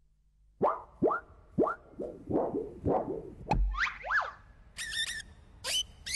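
Cartoon-style sound effects: a run of five or six short plops, each dropping quickly in pitch, about one every half second. Then a sharp click, a couple of whistles that rise and fall, and near the end quick high warbling chirps.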